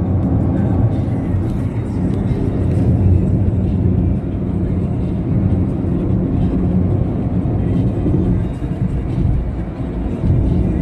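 Steady low rumble of a moving road vehicle heard from inside, with music playing over it.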